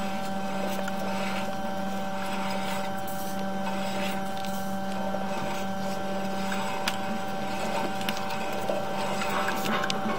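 Steady hum and whir from sewer camera inspection gear while the camera is pushed down an ABS side sewer, with a few faint clicks near the end.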